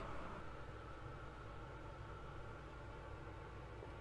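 Faint steady low hum and hiss with no distinct events.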